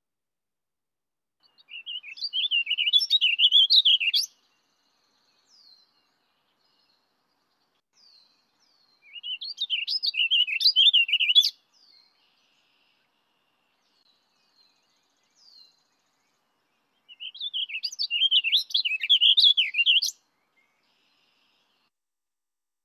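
Warbling vireo singing: three fast, rushed-sounding warbled phrases, each about three seconds long and several seconds apart.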